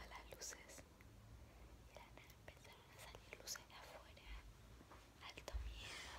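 Faint whispering with a few small mouth clicks, otherwise near silence.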